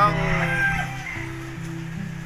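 A rooster crowing, the call trailing off in the first half-second, over background music with steady low notes.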